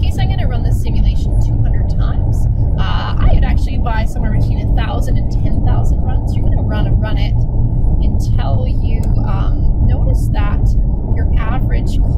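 A person's voice talking over a loud, steady low rumble that fills the lower range throughout.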